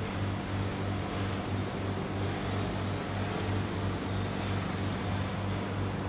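Steady low hum that throbs evenly about three times a second, with no other sound standing out.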